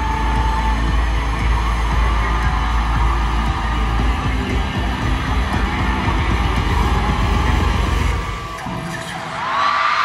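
Loud live concert music played over an arena sound system, with a heavy pounding bass line. The bass drops out about eight seconds in, and a rising sweep leads back into the music near the end.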